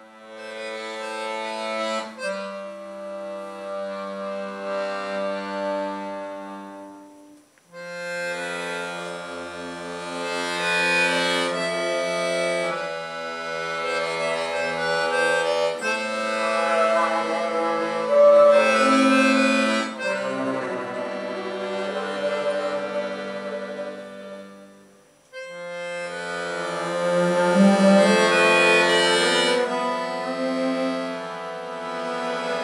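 An accordion playing a slow instrumental introduction of sustained chords, with a bowed double bass underneath. The music breaks off briefly twice between phrases.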